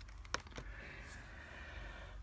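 A single sharp click about a third of a second in, with a fainter tick just after it, as a key on a Texas Instruments SR-40 calculator is pressed; faint room hiss otherwise.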